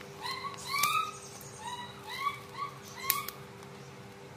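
A small bird chirping repeatedly: a string of short, arched chirps. Two sharp snips of scissors cutting through a broad leaf come about a second in and near the end.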